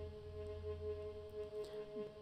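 Sampled viola note on A-flat, played back with reverb, held and slowly fading; its lowest part dies away about one and a half seconds in.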